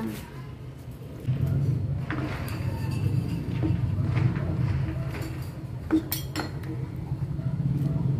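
A spatula stirring thick tomato sauce in a pot, knocking and scraping against the sides with a few sharp clinks, over a steady low hum.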